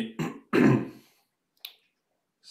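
A man clearing his throat: a short voiced sound, then two rough bursts, the second the loudest, followed by a brief faint click.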